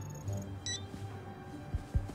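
Tense film-score music with a low sustained drone. A short, high electronic beep comes about two-thirds of a second in, and two dull low thumps fall near the end.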